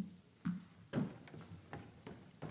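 Footsteps on a stage, faint even thuds about two a second, as someone walks up to the lectern.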